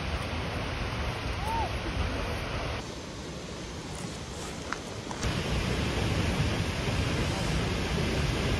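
Steady rush of a waterfall's falling water, with wind on the microphone. The sound is a little quieter between about three and five seconds in, where the shot changes.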